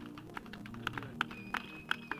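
Scattered light clicks and taps, several a second, over faint sustained background music.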